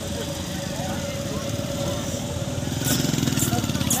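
A motorcycle engine running close by, getting louder toward the end as it comes past.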